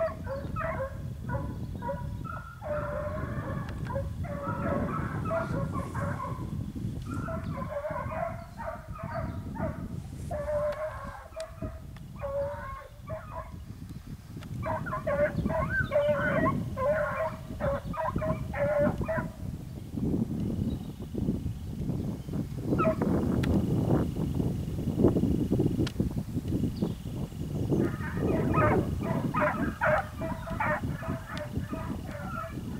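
Hunting hounds baying in runs of rapid yelps, several bursts a few seconds long with pauses between: the hounds are giving tongue on a hare's scent trail.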